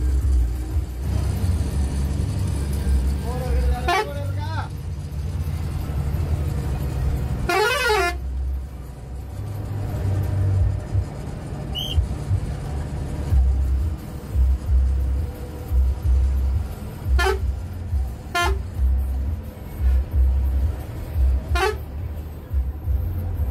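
Bus engine running steadily, heard from inside the cabin while driving. A horn sounds in short blasts: once or twice a few seconds in, loudest at about a third of the way through, and three more times in the last few seconds.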